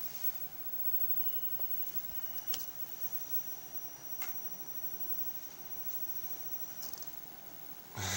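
Faint, thin high-pitched whine from a self-oscillating ignition-coil circuit, stepping up to a higher pitch about two and a half seconds in, with a few sharp clicks. The whine cuts off with a brief crackle near the end, as the LED bulb the circuit is driving blows out.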